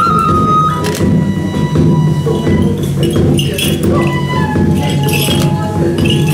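Hana Matsuri dance music: a taiko drum beating under a high flute that holds long notes, stepping down in pitch about a second in and again about four seconds in.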